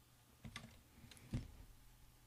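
A few faint computer keyboard keystrokes as a number is typed into a field.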